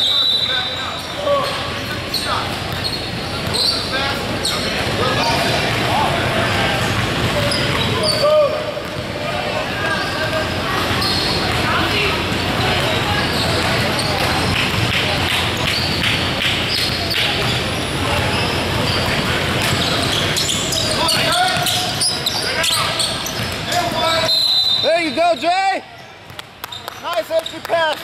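Basketball bouncing on a hardwood gym floor, with voices of players and onlookers echoing in a large gym hall.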